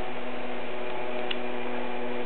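A steady electrical hum of several fixed tones over a faint hiss, with one faint tick a little past halfway.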